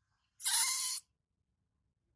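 A baby monkey gives one short, high-pitched shriek, about half a second long, while being towelled dry after a bath it dislikes.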